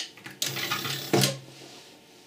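A push-button clicks, then the small 12-volt geared motor of a relay-driven two-position controller runs for about a second, swinging its arm to the other preset position. A sharp clack a little past a second in, the loudest sound, marks the arm reaching its end-stop microswitch and the relay cutting the motor.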